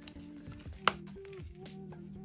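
Soft background music playing steadily, with one sharp click a little under a second in as the cash-envelope binder is handled.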